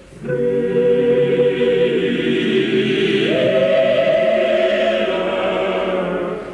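A choir singing long held chords. A new phrase begins just after the start, and about three seconds in the voices move up to a higher chord and hold it.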